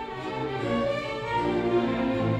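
Live symphony orchestra playing classical-era music, led by the bowed strings with cellos and basses underneath, in sustained, shifting notes.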